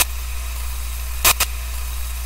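Logo-intro sound effect: a steady hiss of static over a low hum, broken by short sharp glitch bursts at the start and about a second and a quarter in.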